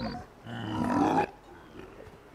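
An alien creature from the show's soundtrack speaking an invented alien language through a translator device: a short sound at the start, then a longer low, rough utterance about half a second in.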